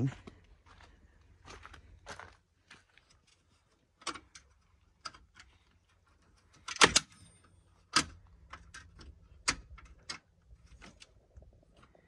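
Scattered sharp clicks and knocks at irregular intervals, the loudest about seven seconds in, with another about a second later.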